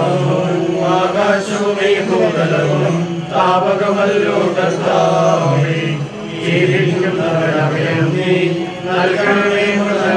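A group of voices singing a slow, chant-like funeral hymn together in long held phrases, with short breaks about every three seconds.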